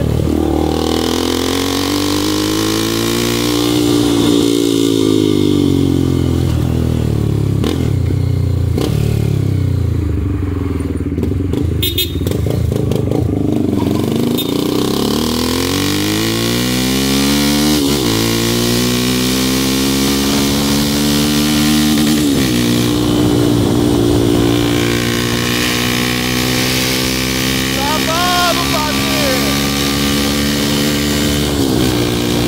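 Honda CB300's single-cylinder engine, heard from the rider's seat. Its revs rise, then fall away as the bike slows. From about twelve seconds in it accelerates hard, with sharp upshifts about two-thirds through and again shortly after. It then holds a steady high-speed run, with wind noise growing.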